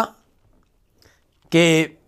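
A man's voice speaking Urdu, breaking off for about a second and a half before the next short word.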